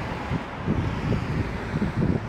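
Wind noise on the microphone, irregular and low, over the sound of car traffic passing on the road.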